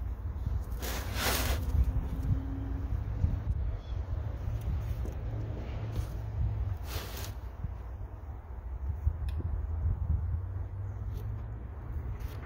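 Steady low outdoor rumble with two brief rustling bursts, a faint low hum for a couple of seconds near the start, and a few small clicks near the end, as tools and plywood are handled; the jigsaw is not running.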